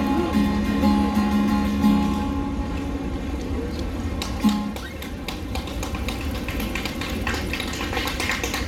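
Ibanez acoustic guitar playing the end of a song: strummed chords ring on and die away in the first two seconds, with one more short chord about four and a half seconds in. After that only background street noise remains.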